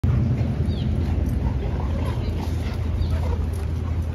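Dogs wrestling in play with a steady, low play-growl rumbling throughout.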